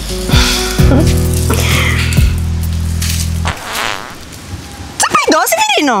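Background music that cuts off abruptly about three and a half seconds in, followed by a short, noisy fart sound effect. A voice starts near the end.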